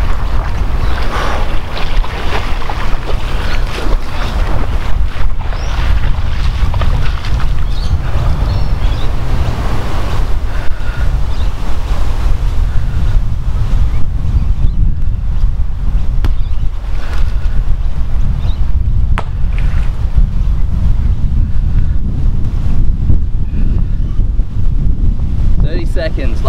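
Wind buffeting the microphone outdoors: a loud, steady, fluttering low rumble throughout, with a fainter hiss above it that dies down about halfway through.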